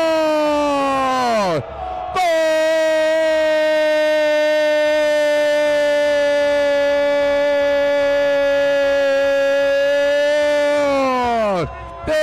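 A male football commentator's long drawn-out goal cry, held on one steady pitch. A first cry falls away in pitch about a second and a half in. After a quick breath comes a second cry held for about nine seconds, which drops in pitch as it ends.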